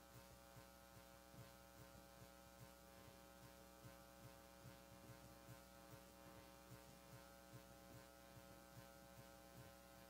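Near silence: a faint steady electrical hum, with faint low thuds repeating about three times a second.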